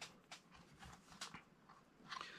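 Near silence with a few faint, scattered clicks and rustles as hands handle metal lock picks in a cloth pick roll.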